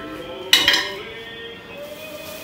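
A single sharp metallic clank with a short ring, about half a second in: a gaming chair's chrome five-star base set down on a tiled floor.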